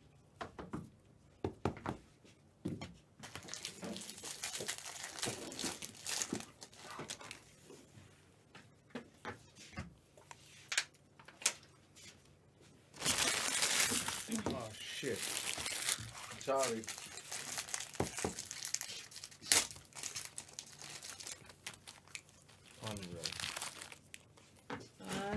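Trading card pack wrappers crinkling and tearing as packs are opened, in two longer stretches with the loudest a little past the middle. Between them come short clicks and slides of cards being flipped through by hand.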